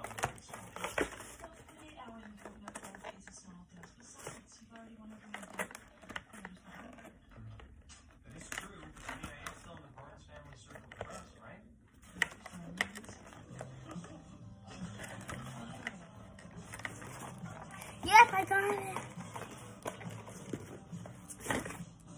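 Rustling, crinkling and clicking of a cardboard box and stiff plastic toy packaging being worked apart by hand, in many short scattered bursts. A short, loud vocal sound breaks in about eighteen seconds in.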